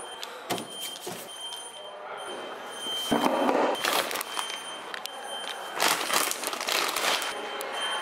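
Handling of metal parcel lockers and plastic mailer packages: a couple of sharp clicks in the first second, then bursts of plastic rustling, over a faint steady high-pitched electrical whine.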